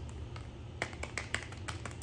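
Small cardboard perfume box being handled, fingers and nails making a few light, irregular clicks and taps on it from about a second in, over a steady low hum.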